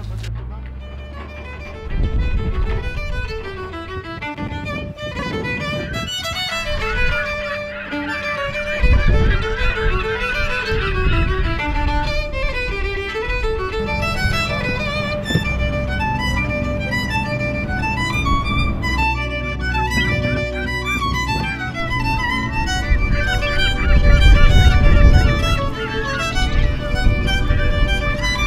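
Background music: a fiddle tune of quick stepping notes over a low accompaniment, swelling louder near the end.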